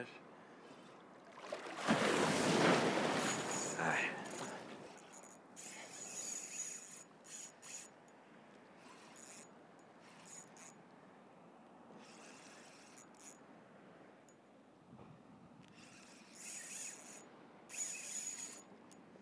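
Ultralight spinning reel with a hooked ladyfish on: the drag gives out high-pitched whining spells as the fish pulls line off, with the reel handle being cranked in between, and the fish close to stripping the reel down to its backing. A loud rush of noise about two seconds in.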